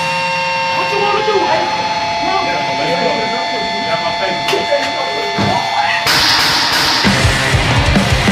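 A new grindcore track opens with a sampled voice over steady sustained tones. About six seconds in, a harsh wash of guitar noise cuts in, and the band's drums and distorted bass start just before the end.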